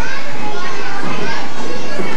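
Many children's voices chattering and calling out over one another, with no single voice clear.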